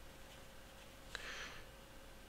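Faint pen writing on paper: a tap of the pen tip about a second in, then a short scratch of a stroke across the paper.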